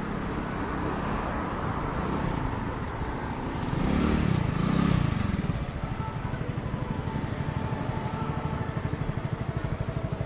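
Street traffic of motor scooters and cars, one vehicle passing close and loud about four seconds in. After that comes a fast, even pulsing.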